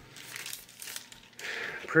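Faint rustling and crinkling, with a brief rush of noise near the end.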